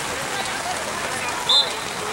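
Steady rain hiss, with faint distant shouts from players and spectators. About one and a half seconds in comes a short, loud, high-pitched tone.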